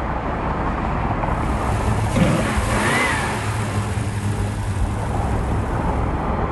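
A classic Pontiac GTO's V8 engine running steadily as the car is driven, heard from inside the cabin as a low rumble with road noise.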